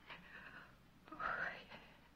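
A person's voice, hushed and breathy: a soft breath, then a louder whispered "oh" about a second in.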